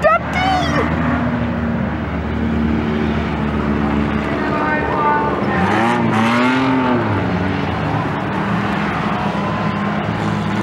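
Several speedway car engines running as the cars lap a dirt track towing caravans, with one engine rising and then falling in pitch about six seconds in as it revs or passes.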